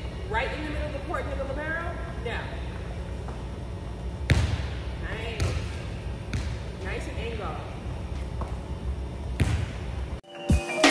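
A few single ball impacts, the loudest about four seconds in and the rest spread over the following five seconds, each ringing on in the echoing gym over a steady low hum. Indistinct voices are heard in the first few seconds.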